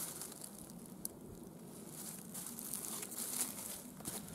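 Cloth rustling with light crinkling and small clicks as a rolled alpaca poncho is handled and settled across a man's back, with one sharper click about a second in.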